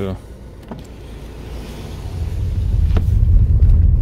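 Renault Espace 5 rolling over a rough, broken road, heard from inside the cabin: a low rumble that builds from about two seconds in, with a single click near the three-second mark.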